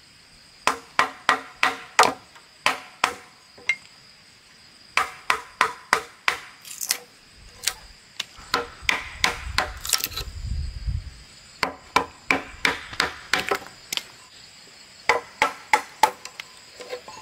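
Machete chopping a short wooden stake against a log to shape its end: sharp wooden strikes in quick runs of several blows, about three a second, with short pauses between. A steady high insect drone runs underneath.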